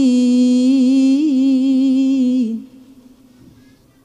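A reciter's voice holding one long, slightly wavering melodic note of Quran recitation (tilawah), which ends about two and a half seconds in.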